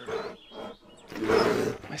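A bear roaring: a loud, rough roar about a second in, lasting about half a second.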